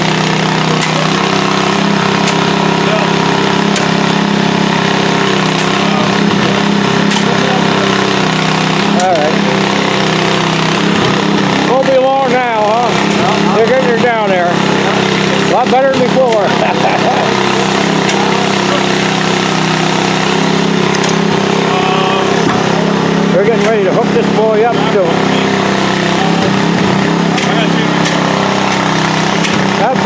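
A large engine running steadily, a loud, even low drone, with people talking indistinctly over it a few times.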